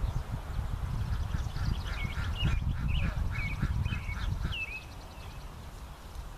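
Ducks quacking in a rapid, even series of about four calls a second for a few seconds, with songbirds chirping. Wind rumbles on the microphone throughout.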